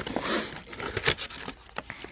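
Cardboard packaging and paper inserts being lifted and shifted inside a box: a rustle in the first second, then a few light taps and knocks.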